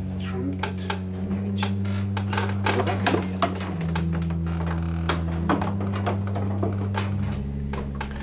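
Historic pipe organ sounding sustained low notes and chords that shift pitch every second or two, with repeated clicks and knocks from the wooden stop knobs being drawn at the console.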